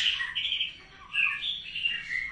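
White-rumped shamas (murai batu) chirping in an aviary: a run of short, high calls with a brief pause about a second in.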